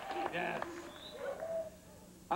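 A few short pitched vocal sounds, including a brief high squeak about a second in, then quieter.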